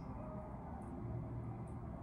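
Quiet room tone with a faint steady low hum; no distinct sound.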